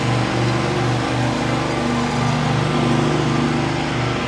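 Zero-turn riding lawn mower's engine running steadily while mowing a lawn, a continuous engine hum.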